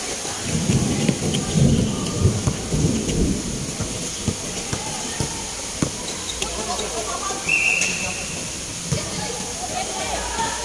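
Outdoor basketball play: a few sharp knocks of the ball on the court over a steady hiss, with low rumbling through the first few seconds and a short high whistle tone a little after the middle.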